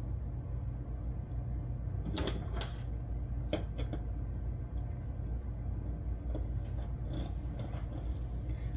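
Light clicks and knocks of a small articulated plastic puzzle model being handled and set on a tabletop: several about two to four seconds in, fainter ones near the end, over a steady low hum.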